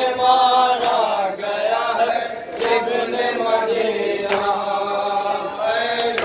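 Male voices chanting a nauha, a Shia lament, in long held, wavering notes. A sharp slap comes roughly every two seconds, typical of matam chest-beating that keeps time with the lament.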